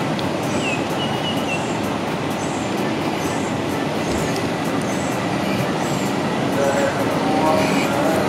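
Steady, rushing outdoor background noise with a few short, high chirps through it.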